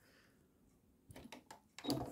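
Faint handling sounds at a sewing machine as the quilt is slid under the presser foot: a quiet first second, then a few light clicks and rustles in the second half.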